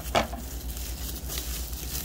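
Plastic bubble wrap crinkling and rustling as hands pull it open, with a sharper crackle just after the start.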